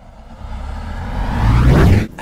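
Intro sound effect: a low rushing whoosh that swells steadily louder and rises in pitch over about two seconds, then cuts off suddenly.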